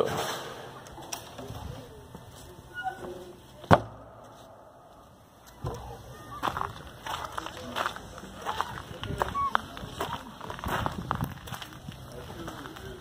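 A door bangs shut once, a single sharp knock about four seconds in. After that, open-air sound with scattered clicks, short high chirps and distant voices.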